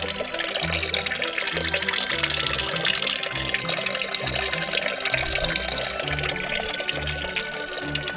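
Background music with a steady bass beat, over a thin stream of spring water pouring from a plastic pipe and splashing into a concrete basin.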